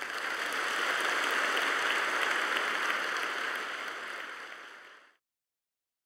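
Audience applauding: a dense patter of clapping that fades away and stops about five seconds in.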